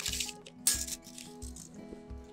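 Background music playing steady tones. Over it comes a sharp click at the start, then a short rasp about three-quarters of a second in, as a tape measure is pulled off a belt and handled.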